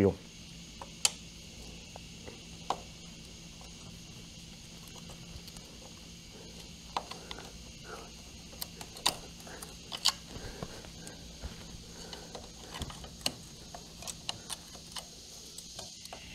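Hand tools working on a motorcycle engine's water pump: scattered light metallic clicks and scrapes as a screwdriver prises the metal coolant hose free of its seal, over a faint steady background hum.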